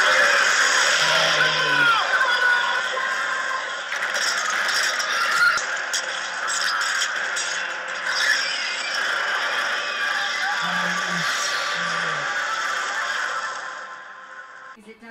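Television drama soundtrack: a dragon's screeches over a dense din of fire and fighting, with dramatic orchestral music; it falls away near the end.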